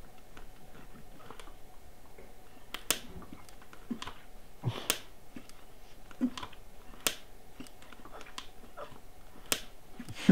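Suction on a thin tube working the diaphragm of a prototype honeycomb frame, with four sharp clicks about two seconds apart as its plastic cell parts shift, and a few softer thuds between them.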